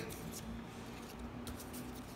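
Quiet room tone: a faint steady low hum with a few soft ticks.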